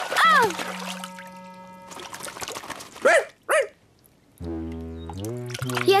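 Cartoon water splash as a character lands in a puddle, over light background music. A short vocal whoop comes at the start, and two brief rising-and-falling cries follow about three seconds in. After a moment's silence the music comes back in.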